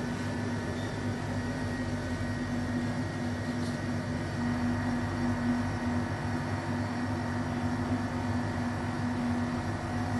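Steady mechanical hum with a constant low tone.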